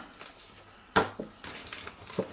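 A kraft-paper bag being handled, with one short sharp crinkle about a second in and a softer one just after.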